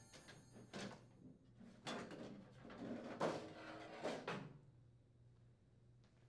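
Faint scraping and knocking of a microwave's sheet-metal outer cabinet being slid off its frame, in several short bursts that stop about five seconds in.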